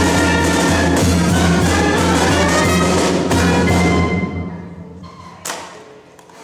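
Small brass band with trumpet and drum playing a tune, with sustained low bass notes underneath; the music stops about four seconds in. A single sharp knock follows near the end.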